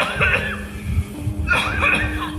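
A man chuckling in two short bursts, near the start and again about a second and a half in, over quiet background music.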